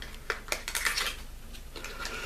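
Light clicks and rattling of a small cosmetics package, a cardboard box and the eyeshadow pot inside it, being handled, with a quick run of sharp clicks in the first second.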